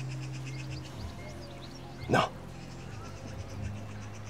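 Soft background music of low held chords under a dramatic pause. A man says "No" once, about two seconds in.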